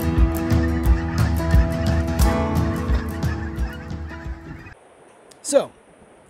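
A flock of birds calling overhead, over acoustic guitar music that stops about three-quarters of the way through.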